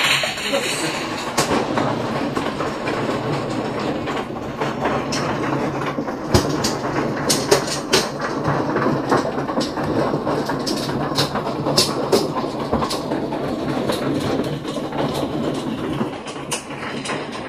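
Automatic mahjong table shuffling tiles inside, a steady rattling clatter. Over it, plastic mahjong tiles click sharply as the walls are pushed forward and the hands are drawn, the clicks thickest between about five and thirteen seconds in.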